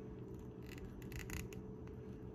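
Faint plastic clicks and scraping as a small plastic gun accessory is pushed into an action figure's hand, with a few short scratches about halfway through.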